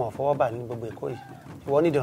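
A man speaking, not in English, in short phrases over a steady low hum.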